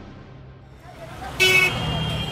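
A car horn honks once, briefly and loudly, about one and a half seconds in, over a low steady traffic rumble.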